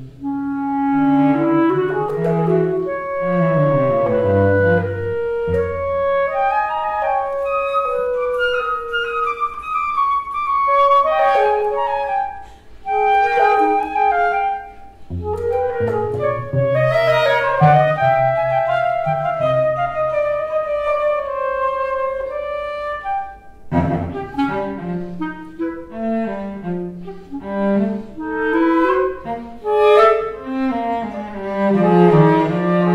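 Clarinet and cello playing a contemporary polytonal chamber piece, their melodic lines set in different keys at the same time. The music breaks off briefly twice, about twelve seconds in and again near twenty-four seconds, where it restarts with a sharp attack.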